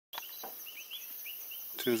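Night-time bush ambience: a steady high insect hiss with short rising chirps repeating every few tenths of a second. A man starts speaking near the end.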